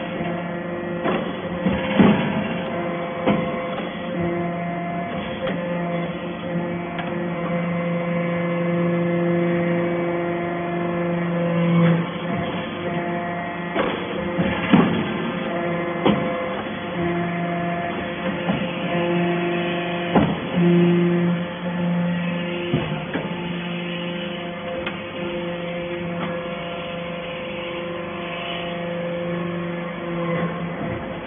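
Hydraulic briquetting press for cast-iron chips running: a steady hum from its hydraulic power unit that dips and comes back a few times, with irregular sharp knocks as the ram presses chips and pushes briquettes out.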